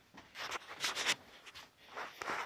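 Faint handling noise: a few soft rubbing and rustling sounds in the first second or so, with no tone to them.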